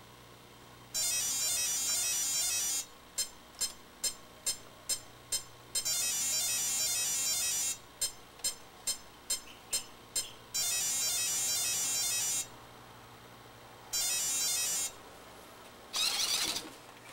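Electronic beeping from an RC truck's speed controller after a LiPo battery is connected. A repeating sequence plays: a warbling high-pitched tone for about two seconds, then a row of about six short beeps at roughly three a second. The cycle runs about three times, ending in a shorter burst near the end.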